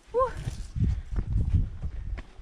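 Footsteps of hikers walking on a dry dirt-and-rock mountain trail: a run of irregular low thuds, opened by a short voiced 'uh' from a walker.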